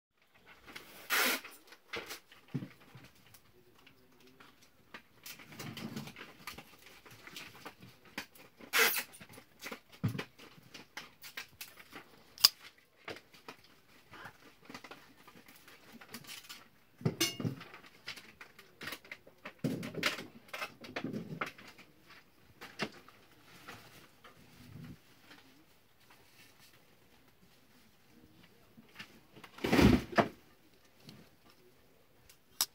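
Kizer Dorado linerlock folding knife being handled and its blade opened and closed: scattered clicks and snaps of the blade and lock, with rubbing of the hand on the handle. One click about halfway through is especially sharp, and there is a louder burst just before the end.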